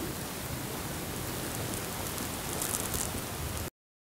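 A steady, even hiss of background noise with a few faint ticks, cutting off abruptly near the end.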